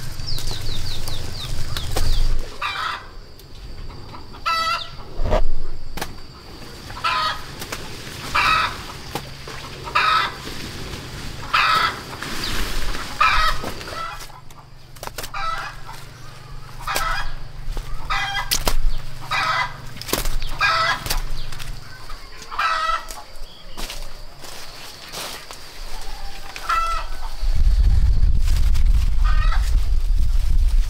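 A chicken clucking over and over, a short call roughly every second, with a few sharp knocks between the calls.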